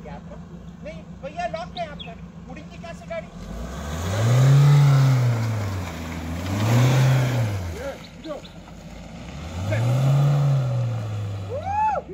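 Mahindra Thar engine idling, then revved hard three times as the 4x4 pulls up a muddy grass slope; each surge rises and falls in pitch, the first the loudest.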